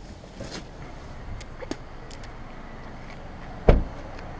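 A few light clicks and knocks as someone gets out of a 2017 Mazda CX-5, then the car's door shut with one solid thud near the end.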